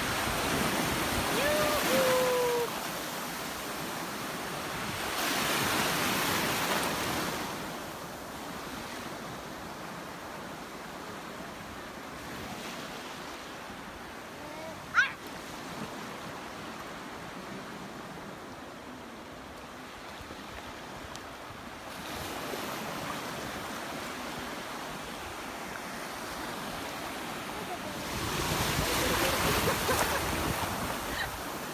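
Small sea waves breaking and washing in the shallows, the surf swelling louder several times. A brief high-pitched squeak about halfway through.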